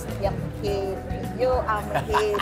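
A woman talking, with background music under her voice that has a steady low bass.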